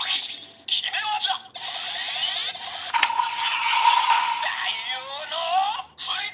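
Electronic voice and sound effects from a DX Gashacon Sparrow toy weapon's speaker: it calls "Gashat!" as the Taiyou no Agito gashat is inserted, then plays synthesized standby effects. A click comes about three seconds in, followed by a steady electronic tone and a rising whine near the end as the finisher sequence starts.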